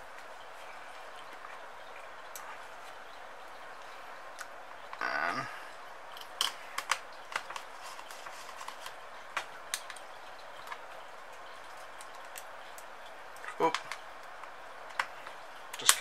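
Scattered small, sharp clicks and taps of screws and small parts being handled and fitted on a carbon-fibre quadcopter frame, irregularly spaced, over a steady hiss.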